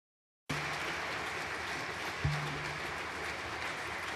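Audience applause, cutting in abruptly about half a second in, with a single thump about two seconds in.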